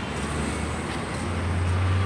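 Road traffic noise: a steady hum of passing vehicles, with a low engine rumble that grows louder from about a second in.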